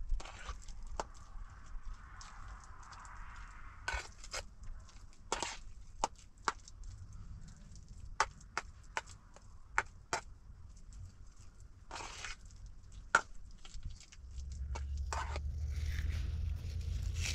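A metal spoon clicking and scraping against a metal bowl at irregular intervals as soft food is stirred and mashed. A low rumble sets in near the end.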